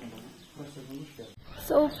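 Quiet, low-pitched talking. After an abrupt cut near the end, a woman's louder voice begins speaking.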